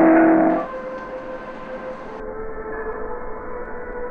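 A loud held chord that breaks off about half a second in, followed by a steady drone of several held tones with a faint hiss behind it.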